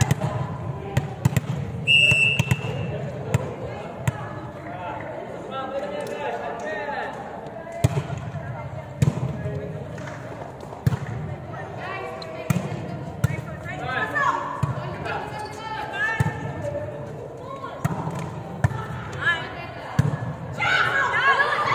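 A volleyball being struck again and again in a rally, sharp slaps echoing around a large indoor hall, over players' calls and chatter. A short whistle sounds about two seconds in.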